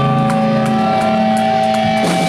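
Live electric guitar chord held and ringing steadily through the band's amplifiers, one unchanging sustained chord.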